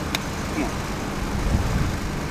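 Steady low rumble of outdoor traffic noise, with a single sharp click just after the start.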